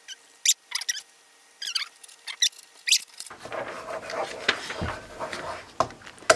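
Pens scratching on paper on a hard counter: a few short, squeaky strokes in the first half. In the second half comes a louder, busier stretch of sound.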